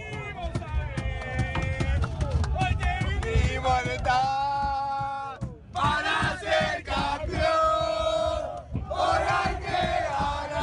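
Large crowd of football fans chanting and singing together, with shouts mixed in. The chant breaks off briefly a little past halfway, then picks up again.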